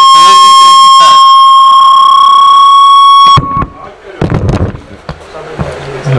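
Loud, steady, high-pitched howl of microphone feedback through a public-address system, cutting off abruptly about three and a half seconds in. A few knocks follow.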